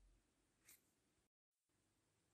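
Near silence, with one faint click less than a second in.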